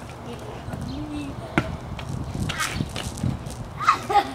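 Children's voices and calls around a ball bouncing once on a concrete driveway, a sharp smack about one and a half seconds in.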